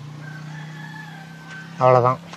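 A faint, long drawn-out bird call, rising a little and then falling, over a steady low hum.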